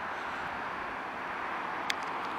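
Steady hum of distant city traffic, with a single sharp click just before the end.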